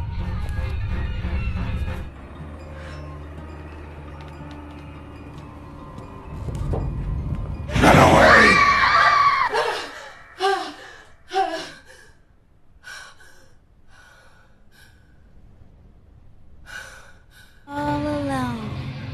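Low, dark droning film score that swells into a loud, drawn-out scream about eight seconds in, followed by two short gasping cries and faint ragged breaths.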